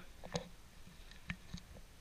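A few clicks and taps as a rugged rubber-and-plastic solar power bank is handled and turned over in the hands.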